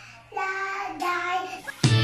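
A small child singing a short phrase. Near the end, background music comes in suddenly.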